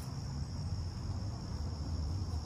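Steady high-pitched chirring of crickets in the grass, over a low rumble.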